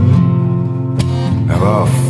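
Blues song with acoustic guitar holding a chord between sung lines, a sharp strum about a second in, and the singing voice coming back in near the end.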